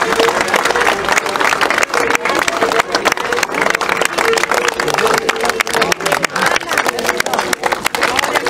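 A large crowd applauding, dense clapping over a babble of voices, with a wavering held tone running through it.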